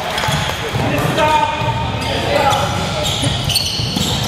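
A basketball being dribbled on a hardwood gym floor, its repeated bounces echoing in the large hall under the voices of players and spectators.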